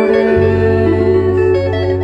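Live hymn band music through a PA: amplified guitar holding sustained chords, with the bass line dropping back in about half a second in.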